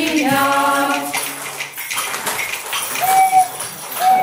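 A group of women singing a Latvian folk song together hold a final note that breaks off about a second in, with one lower voice lingering briefly after it. Then there are scattered small jingles and clicks and a short single-pitched vocal call.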